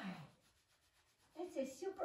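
A woman's voice talking, not loud: a word with falling pitch trails off at the start, there is a quiet gap, then she starts speaking again about one and a half seconds in.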